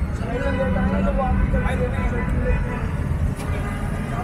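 Steady low rumble of road traffic passing a roadside eatery, with people talking nearby and a single sharp click shortly before the end.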